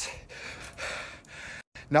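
A man breathing hard between shouted lines, a few noisy breaths in a row. The breaths cut off briefly near the end, just before he speaks again.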